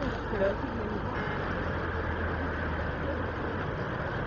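City street ambience: a steady wash of traffic noise with people's voices in the background, and a low engine rumble from a vehicle for a couple of seconds in the middle.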